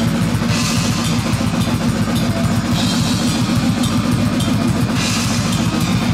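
Death metal band playing live: heavily distorted electric guitars and bass over fast drumming, with cymbal crashes about every two seconds.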